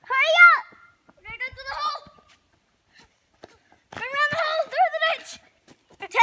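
A young child's high-pitched voice calling out three times, with pauses between, in no words the transcript could catch.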